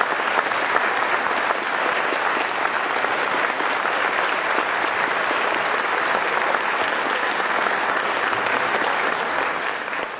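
Audience applauding in a concert hall: a dense, steady clatter of many hands clapping that starts to die away at the very end.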